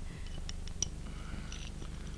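A few faint clicks of cutlery on breakfast dishes over a steady low hum.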